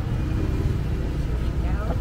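Steady low rumble of city street noise with faint voices in the background.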